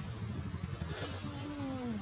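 A macaque's cry that slides down in pitch in the second half, made by a monkey grabbed and wrestled by another, over a steady low rumble.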